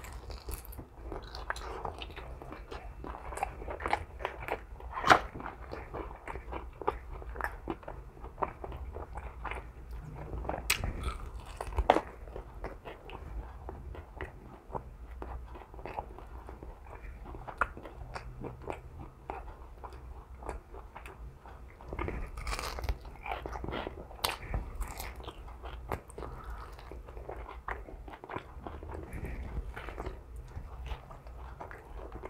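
A person biting and chewing a sauced chicken wing drumstick close to the microphone, with irregular mouth clicks and smacks. The loudest are about five and twelve seconds in.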